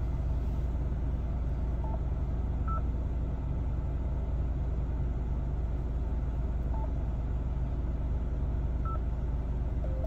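A car engine idling steadily, heard inside the cabin. Over it come a few short, single beeps from a Yaesu FTM-400XD mobile radio as its touchscreen keys are pressed.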